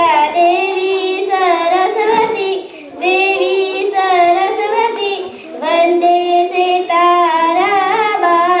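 A young girl singing solo into a microphone without accompaniment, holding long sliding notes in phrases, with brief breaks about two and a half and five and a half seconds in.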